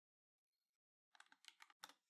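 Faint typing on a computer keyboard: silence, then a quick run of about ten keystrokes starting about halfway in.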